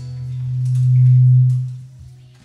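A single low, steady tone from the band's sound system swells up, peaks about a second in and fades away before the end, over faint sustained notes from guitars and keyboard as the band gets ready to play.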